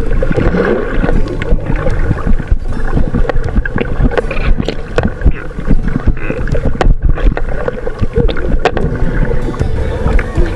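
Muffled underwater sound through an action camera's waterproof case: water sloshing against the housing with many small knocks, over a steady low hum.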